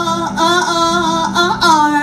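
A live singing voice holding long notes over an acoustic guitar, the last note sliding down in pitch near the end.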